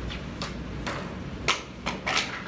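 A few sharp taps and knocks, the loudest about one and a half seconds in, from a whiteboard eraser being worked against the board and its ledge.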